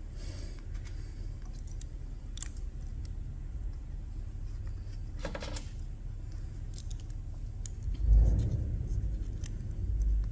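Light metal clicks and a short clink as a steel charge pump retainer plate is handled and seated by hand on a hydraulic pump housing, over a steady low background rumble. A dull thump comes about eight seconds in.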